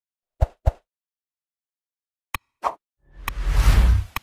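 Animated intro sound effects: two quick pops in close succession, a sharp click and another pop a little after two seconds, then a swelling rush of noise with a deep rumble through the last second.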